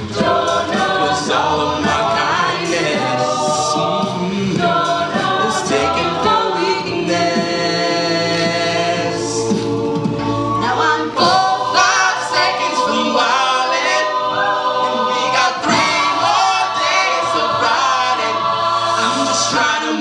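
Mixed-voice a cappella group singing in harmony, holding sustained chords over a sung bass line, with soloists on microphones.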